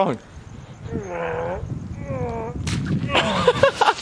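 A man making two drawn-out retching groans, then a single sharp smack, and then voices begin.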